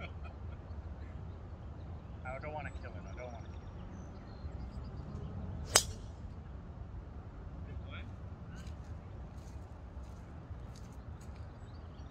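A golf driver striking the ball off the tee: one sharp crack a little under six seconds in, over a steady low rumble.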